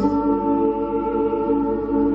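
Live ambient music: a thick chord of long, steady drones held through, shifting to a new chord right at the start, with a woman's sung voice blended into it.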